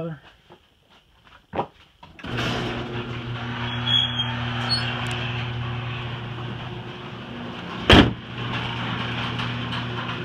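A steady machine hum starts abruptly about two seconds in and keeps on. About eight seconds in comes one loud slam, the Jeep Grand Cherokee's hood being shut.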